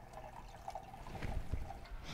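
Faint trickle of water running through the PVC pipe channel of a working hydroponic system, with scattered small dripping plinks.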